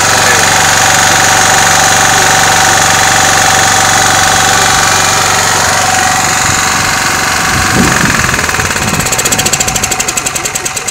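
A DeWalt 4300 gasoline engine running hard and steady, with a high steady whine over the engine noise. In the last second or so the sound breaks into a rapid even pulsing and begins to fall off.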